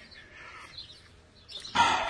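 A two-year-old filly snorting once near the end, a short noisy blow through the nostrils, with fainter breathing noise before it.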